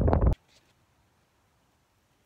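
Wind noise on the microphone that cuts off abruptly about a third of a second in, followed by near silence.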